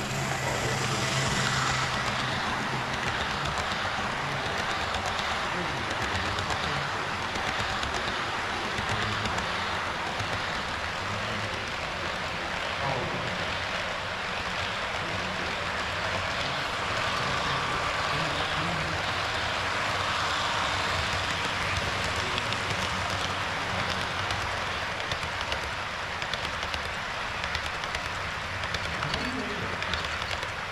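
HO-scale model trains running past at track level: a steady rolling rumble of metal wheels on the rails. A low motor hum is stronger for the first couple of seconds as the locomotive goes by close.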